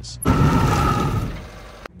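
A sudden loud burst of noise with a faint ringing tone in it, fading over about a second and a half and then cutting off abruptly.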